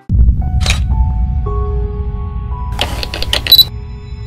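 Produced channel logo sting: a low rumbling drone with a swept whoosh about a second in and a few held synth notes, then a quick burst of mechanical camera-shutter clicks near the end.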